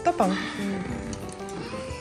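Light background music with soft, held tones, and a single spoken word at the very start.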